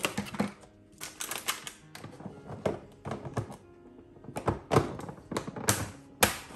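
Clear plastic lunch-box containers being handled on a counter and their snap-on lids pressed shut: a string of sharp plastic clicks and knocks, busiest and loudest near the end. Background music plays underneath.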